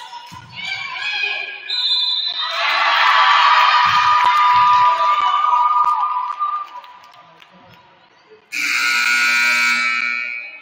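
A basketball referee's whistle about two seconds in, followed by several seconds of loud gym noise with music. Near the end, the scorer's-table horn sounds once for about a second and a half, signalling a stoppage.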